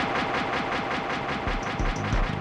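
Electronic music intro: a fast, even rattling buzz over a steady high tone, with deep bass drum hits coming in about a second and a half in.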